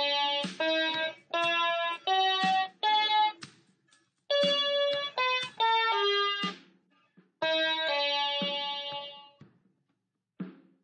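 Single notes played one at a time on an MQ-6106 61-key electronic keyboard, a D minor scale. It climbs from D to the D above, then after a short pause runs back down and ends on a long held low D.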